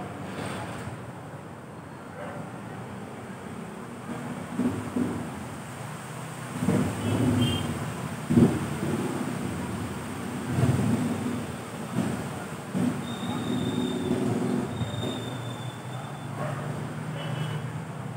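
Low background rumble of passing traffic that swells and fades several times, with a sharp knock about eight seconds in and a thin high tone lasting a couple of seconds later on.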